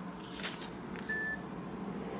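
Paper receipt rustling, then about a second in a click and a single short beep from a Nokia mobile phone.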